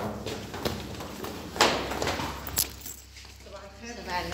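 Camera handling noise: rustling and rubbing right at the microphone, with irregular clicks and a sharp rush of noise about one and a half seconds in and another about a second later.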